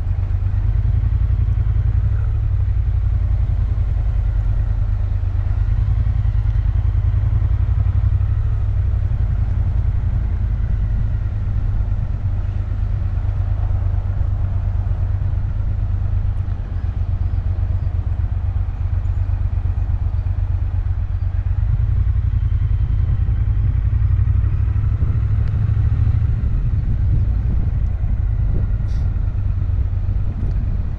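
Motorcycle engine running steadily at a low cruise, heard from a camera mounted on the bike, with a deep drone and slight rises and falls in revs.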